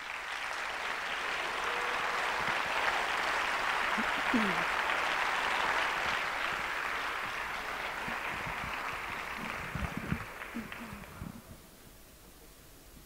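Audience applauding steadily, then dying away about eleven seconds in.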